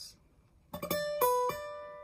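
Steel-string acoustic guitar fingerpicked with thumb, middle and index. After a short pause comes a quick run of plucked notes, then a pull-off down to a lower note and a hammer-on back up, with the notes left ringing.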